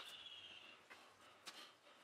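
Near silence: faint room tone, with a thin high tone fading out in the first second and a couple of soft ticks.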